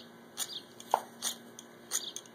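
A knife blade scraped along a ferrocerium fire-starter rod, four quick scrapes about half a second apart, striking sparks to light magnesium shavings on tinder.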